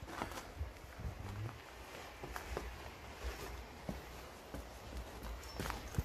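Footsteps climbing a rusty, fire-damaged stairway, faint irregular knocks as each step lands.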